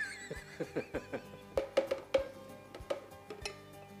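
A man laughing in a run of short bursts, each falling in pitch, over light background music.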